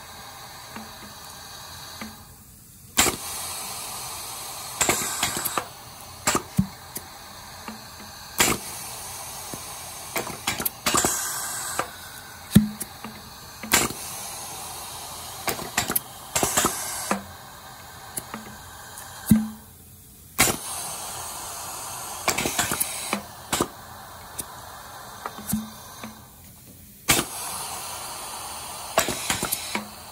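Four pneumatic rotary-valve piston filling machines cycling together while running nearly dry with a little water: repeated sharp clacks of the pistons and rotary valves, with several bursts of hissing air exhaust between them.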